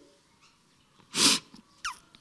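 One short, sharp sniff about a second in, from a woman who is speaking emotionally, then a brief falling squeak near the end.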